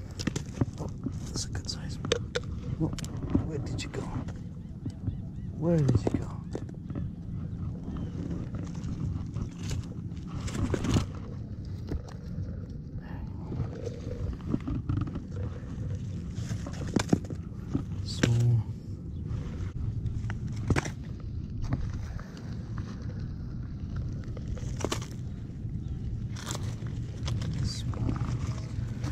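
Stones and pebbles knocking and clattering as rocks on a rocky shore are turned over by hand. Short sharp clicks come scattered and irregular over a steady low background noise.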